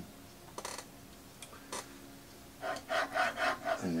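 Metal lateral slider of a camera positioning stage being slid into its dovetail track: a few short scrapes, then near the end a quick run of rasping metal-on-metal rubs as it is worked into place.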